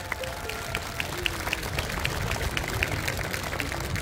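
A crowd applauding steadily in response to a call for a round of applause, with faint music underneath.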